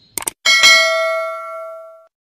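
Subscribe-button animation sound effect: two quick clicks, then a notification bell ding that rings out and fades over about a second and a half.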